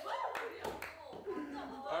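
People talking and chuckling in a room, with a few sharp hand claps in the first second.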